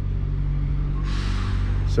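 Steady low rumble of a motor vehicle engine running nearby, with a short hiss about a second in.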